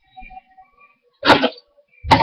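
A single short, loud burst of noise about a second in, over faint steady background tones.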